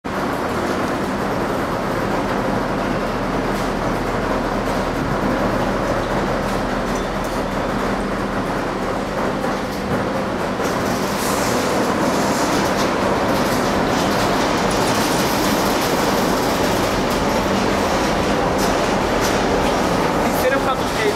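Loaded intermodal freight wagons carrying lorry trailers rolling past as the train departs, a steady rumble of wheels on rail that grows slightly louder, with scattered clicks of wheels over rail joints in the second half.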